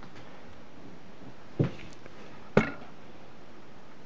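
Two short, sharp knocks about a second apart over a steady faint hiss.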